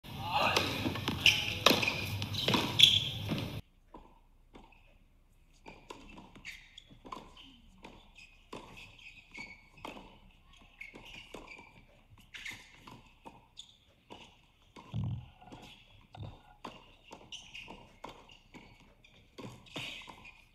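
Tennis ball being struck and bouncing on a hard court: a string of short, sharp knocks about one or two a second, with a heavier thud about three quarters of the way in. It opens with a few seconds of loud, noisy sound that cuts off suddenly.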